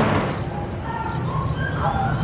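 Steel roller coaster train's rumble dying away in the first half second, leaving outdoor ambience with a steady low hum and scattered short, high tones.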